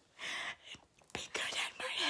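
A woman's whispered, breathy voice in short spurts, with a sharp click just over a second in.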